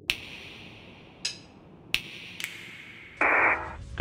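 Radio-style static: a few sharp electronic clicks, one of them trailing a short ringing tone, then near the end a brief loud burst of hiss like a radio squelch.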